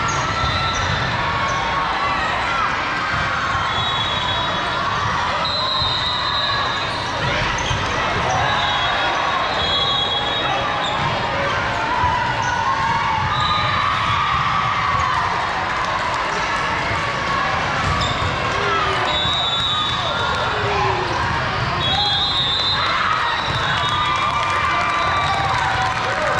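Busy volleyball hall with several courts in play: a steady murmur of spectators and players, volleyballs being hit and bounced, and, several times, a short high whistle tone.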